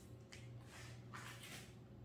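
Near silence: a low steady hum with a few faint, soft rustles.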